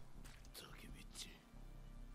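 Near silence with faint, soft voice sounds, like low whispering, in the first half.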